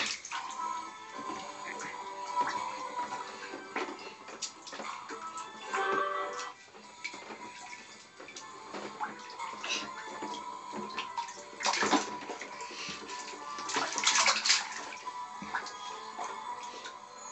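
Water splashing in a plastic baby bathtub as a baby slaps and paddles it with its hands, with the strongest splashes about twelve and fourteen seconds in. Music plays in the background.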